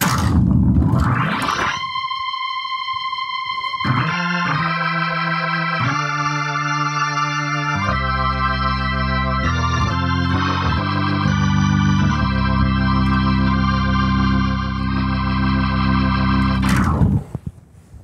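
Nord Stage keyboard playing a Hammond organ sound. It opens with a rising glissando, then plays sustained organ chords that change every second or two and stop about a second before the end.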